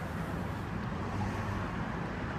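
Steady background hum of road traffic in the open air, a low rumble with no single passing vehicle standing out.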